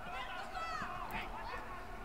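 Faint, distant voices calling out in the competition hall, heard under the quiet background of the bout's own sound.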